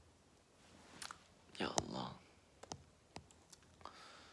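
Quiet room with scattered light clicks and taps, several over the last three seconds, and a short vocal sound from a person, no words, about one and a half seconds in, the loudest moment.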